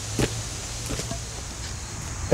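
A concrete paver being set down on its gravel bed, giving one sharp knock about a fifth of a second in and a couple of faint ticks later, over a steady background rumble.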